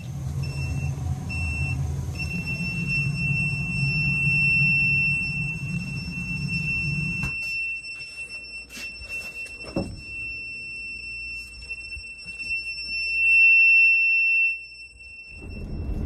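Handheld carbon monoxide meter alarming: a high-pitched beep, first in short pulses, then held as one continuous tone, loudest near the end before it cuts off about fifteen seconds in. It signals a dangerous carbon monoxide level from a steam boiler whose heat exchanger has a gaping hole. A low rumble runs underneath for the first seven seconds or so.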